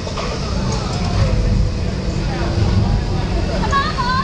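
Low rumble of a small electric race car driving close by on asphalt.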